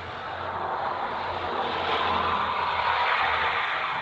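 A broad rushing noise that swells to its loudest about two to three seconds in and then fades, heard over a video-call microphone.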